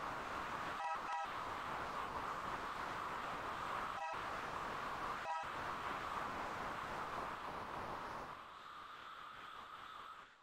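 Sustained electronic tone of the 963 Hz solfeggio frequency played on a Lambdoma harmonic keyboard, heard as a hazy hum around 1 kHz that cuts out briefly a few times. It drops in level about eight seconds in and stops at the end.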